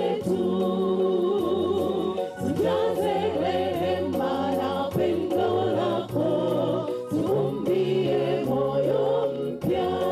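A church congregation singing a gospel song together, with a woman among them singing into a handheld microphone.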